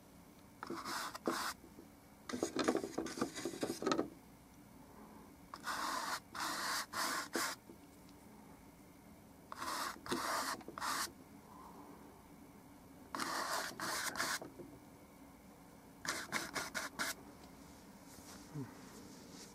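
A flat bristle paintbrush scrubbing paint onto stretched canvas: six groups of quick, scratchy strokes, each lasting a second or two, with short pauses between them.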